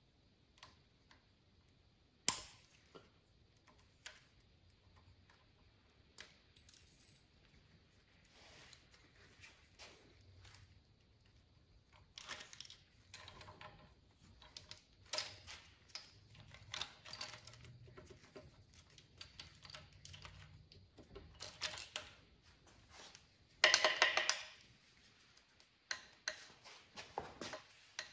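Light metallic clicks and small rattles of a steel timing chain and hand tools being handled on a Mercedes M117 V8. They come sparsely at first, with one sharp click about two seconds in, then grow busier in the second half, with a louder burst of clattering near the end.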